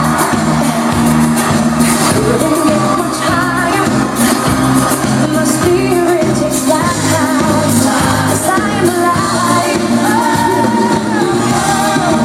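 Loud pop song with a sung lead vocal over a steady bass beat, running without a break.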